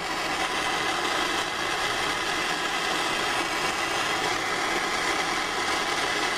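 MAPP gas hand torch burning with a steady hiss.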